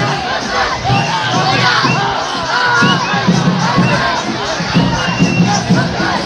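Large crowd shouting and cheering, many voices overlapping in short rising and falling cries.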